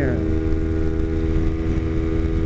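Kawasaki Ninja 250R's parallel-twin engine cruising at freeway speed, a steady drone at constant revs that neither rises nor falls, over a low rumble, as heard from the rider's seat.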